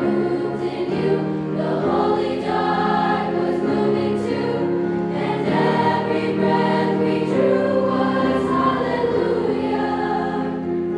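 Junior high girls' choir singing, mostly long held notes with the voices moving together from chord to chord.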